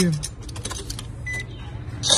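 Car keys clicking and rattling at the ignition, then a short electronic beep from the car about a second and a half in, over a steady low hum in the cabin.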